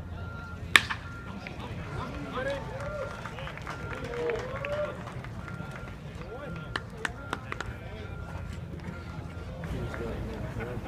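A pitched baseball ending in one sharp, loud smack about a second in. Voices call out over a steady ballpark murmur, and a few fainter clicks follow later.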